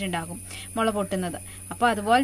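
A woman's voice speaking in short phrases with drawn-out vowels, over a steady high-pitched tone.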